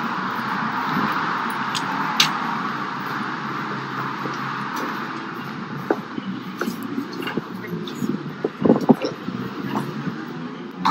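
Phone-microphone ambience of someone walking in from the street: a steady street-traffic hum that fades after about five seconds as they enter a lobby, followed by indoor room sound with scattered short knocks and faint background voices.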